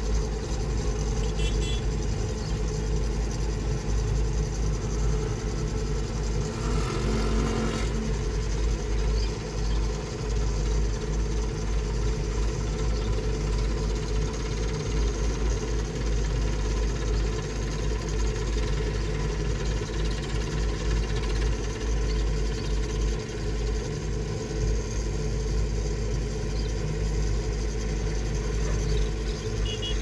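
Diesel engine of an XCMG XR240 rotary drilling rig running steadily, a constant low engine sound, while the rig holds and lowers a reinforcement cage into the bore. A brief louder noise comes about seven seconds in.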